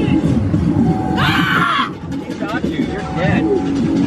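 Haunted attraction's soundtrack: music mixed with indistinct voices, broken by a loud, short burst of noise a little over a second in.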